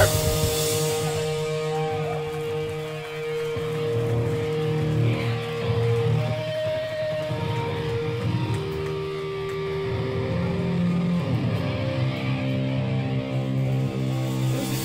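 Electric guitar ringing through the amplifier right after the full band stops: long held tones that swell and fade one after another over a low amp rumble, with no drums.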